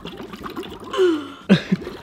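Air blown through a drinking straw bubbling in a glass of water mixed with baking soda and sugar, with a brief throat sound about a second in and a sharper puff near the middle.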